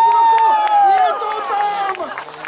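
Giant-scale Extra 330SC RC aerobatic model's 200 cc engine holding the plane in a hover on its propeller. Its pitch rises slightly and then drops away after about a second as the throttle is eased back.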